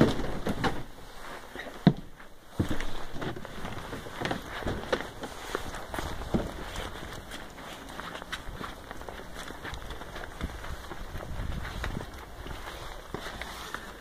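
Footsteps on brick block paving: a run of irregular light knocks and scuffs, with a sharper knock about two seconds in.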